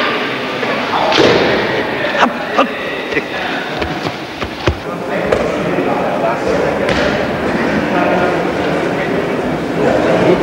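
Indistinct voices with a scatter of sharp knocks and thumps, the loudest about two and a half and four and a half seconds in.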